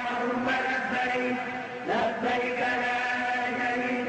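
Islamic religious chanting by male voice in long, steadily held notes, with a short rising glide about two seconds in.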